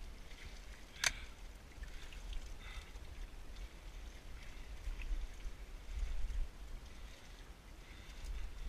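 Steady low rumble with light lapping of lake water against the shoreline rocks, and one sharp knock about a second in.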